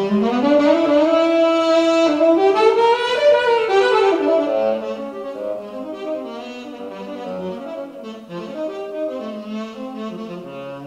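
ROLI Seaboard playing a saxophone-emulation synth patch as a solo melodic line. It opens with a note slid upward, held and bent higher with a shaking vibrato, then moves into a quieter run of shorter notes in the second half.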